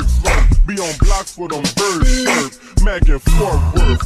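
Slowed-and-chopped hip hop: pitched-down, slowed rapping over a heavy bass beat.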